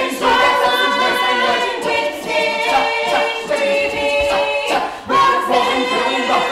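A stage ensemble of voices singing together in chorus, with held notes and a brief break about five seconds in.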